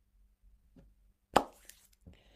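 A single sharp click about a second and a half in, followed by a fainter tick, in an otherwise quiet pause.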